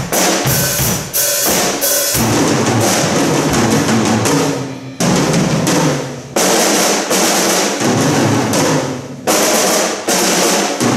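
Four drum kits played together as an ensemble, with snare rolls, bass drum and cymbal crashes. The playing dies away briefly about five seconds in, again a second later and just after nine seconds, each time coming straight back in.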